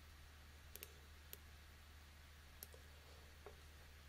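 Near silence with a handful of faint computer-mouse clicks spread through the few seconds.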